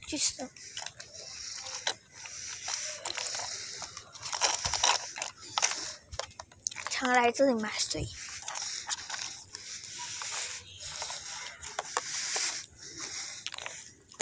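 Irregular scuffing and crunching noise from a handheld phone being carried while walking over pavement, with a brief voice sound about seven seconds in.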